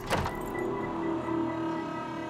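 A door lock or latch clicks once at the start, followed by a steady hum of several held tones.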